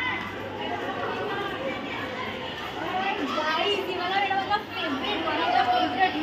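Many schoolgirls' voices chattering and calling out at once: a steady hubbub of children's talk with no single voice standing out.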